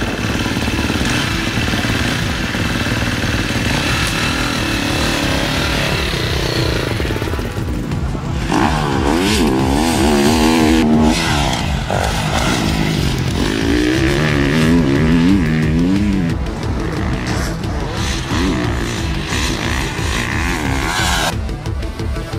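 KTM motocross bike engine revving hard, its pitch climbing and dropping repeatedly through gear changes, loudest in the middle stretch, mixed with background music.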